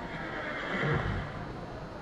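A Friesian horse whinnying.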